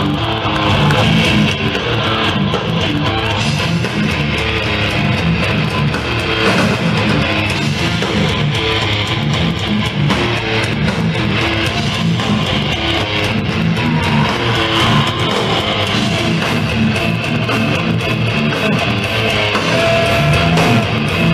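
Live death metal band playing heavily distorted electric guitar riffs over drums and bass, loud and dense.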